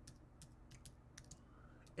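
Faint computer keyboard typing: a handful of light, irregular key clicks.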